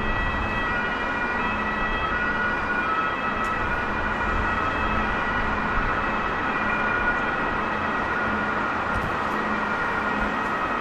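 An electric train approaching on the station tracks: a steady rumble with several high, sustained whining tones that shift slightly as it comes in.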